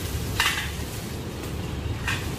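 Chainsaw idling with a steady low rumble, and a short scraping clatter about half a second in.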